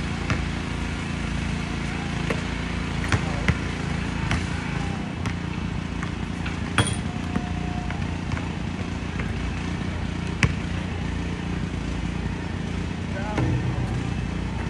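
Basketball bouncing and striking on an outdoor court: several sharp impacts at irregular intervals, the loudest about ten seconds in, over a steady low background noise.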